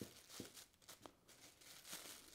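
Faint crinkling of a thin plastic shopping bag being flipped and folded in the hands, a few soft rustles spread through otherwise near silence.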